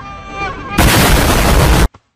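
A pitched, voice-like held sound, then a sudden blast of extremely loud, distorted noise like an explosion, lasting about a second and cutting off abruptly.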